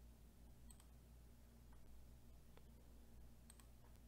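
Near silence with a few faint, scattered clicks of a computer mouse being clicked.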